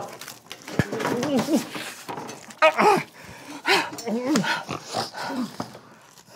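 A man's muffled grunts and moans through a mouthful of leafy vegetables being stuffed into his mouth: several short vocal sounds whose pitch slides up and down. A single sharp knock comes about a second in.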